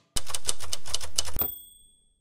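Manual typewriter sound effect: a quick run of keystrokes, followed near the end by the ding of the carriage bell ringing out.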